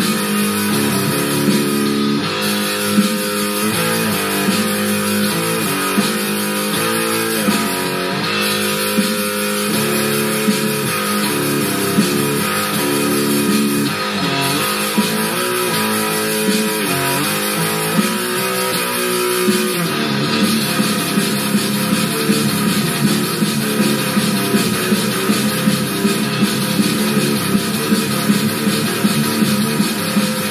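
Electric guitar with an 18-tone equal temperament microtonal neck, played through a small Ibanez Tone Blaster amp: death-thrash metal riffs in the odd-sounding 18-EDO tuning over a fast black metal drum loop. The picking grows denser in the last third.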